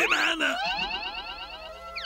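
Cartoon sound effect for a magical transformation as a character turns blue. It opens with a quick rising swoop, goes on as a fast run of repeated rising chirps, and ends with a falling glide.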